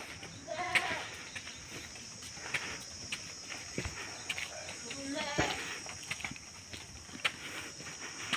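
Footsteps crunching on a gritty dirt path, with two short wavering animal calls, one about half a second in and one around five seconds in, over a steady high hiss.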